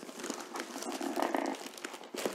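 Thin plastic mailer bag crinkling and rustling as it is pulled and slid off a cardboard box, with a denser drawn-out rubbing stretch about a second in.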